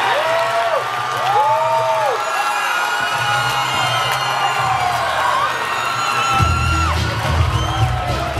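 Fight crowd cheering and whooping over loud music, with long rising-and-falling shouts in the first few seconds. The music's bass beat grows much louder about six seconds in.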